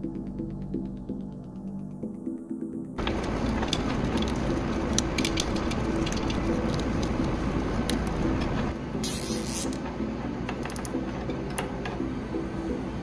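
Small clicks and rustles of fingers handling the 3D-printer hotend's wires and plastic connectors, starting about three seconds in. Under them runs a steady hum or soft music, and there is one short hiss near nine seconds.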